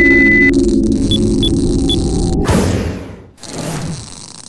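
Electronic title-sequence sound effects: a steady high beep for about half a second, then three short high blips over a low electronic hum. A swell of static noise follows about two and a half seconds in, and another burst of static comes near the end.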